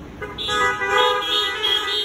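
Several car horns honking together at different pitches, starting a moment in and held steadily for about two seconds: a drive-in congregation honking its response from parked cars after a Bible reading.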